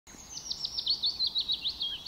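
A songbird singing: a quick run of about a dozen high chirps that drift lower in pitch, lasting about a second and a half.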